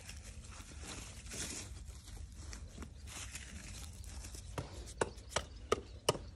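Crunching and scuffing on dry, straw-strewn garden soil, with a run of four sharp knocks near the end.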